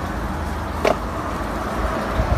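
A single short crack from the upper thoracic spine, around T3, as the chiropractor's adjustment moves the joint, about a second in, over a steady low hum.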